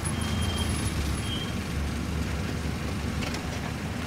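A car engine running steadily, a low rumble, from a TV episode's soundtrack, with faint thin high tones in the first second and a half.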